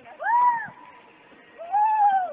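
A young girl giving two high-pitched squeals, each rising and then falling in pitch, the second one longer, during a rope-swing ride out over a river.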